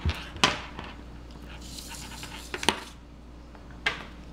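Hands handling a USB charging cable and heat shrink tubing on a tabletop: a few light clicks and taps, the sharpest about half a second in and a quick pair near two and a half seconds, with a soft rustle between.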